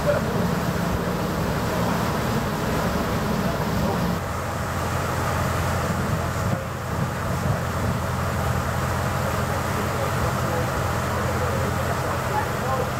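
Steady drone of a passenger ferry's engines under way, mixed with wind and water noise; the drone deepens about four seconds in.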